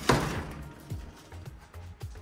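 A sliding glass door knocks against its frame as it is pushed open, one sharp hit that fades quickly. Quiet background music with low bass notes follows.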